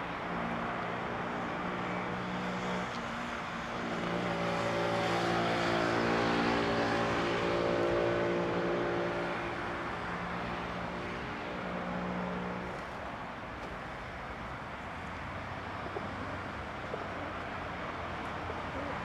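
A car engine running at a steady pitch, growing louder from about four seconds in and fading away after about twelve seconds, over a steady hiss.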